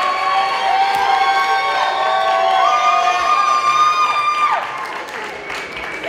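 Concert audience cheering, whooping and applauding, many voices shouting at once; the cheering dies down about four and a half seconds in.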